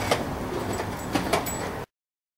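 Skateboard rolling along the pavement with a steady low rumble, broken by a few sharp clacks; the sound cuts off suddenly near the end.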